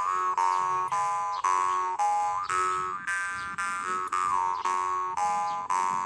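Copper jaw harp played in an improvisation: a buzzing drone plucked about twice a second, its overtones shifting up and down in a melody and gliding between notes as the player's mouth shape changes.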